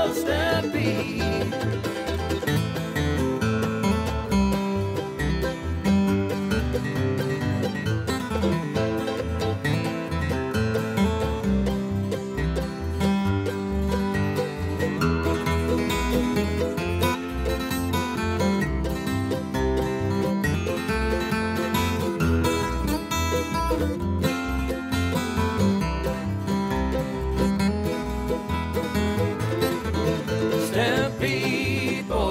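Instrumental break in a country-western song: acoustic guitar picking a solo over a steady band beat.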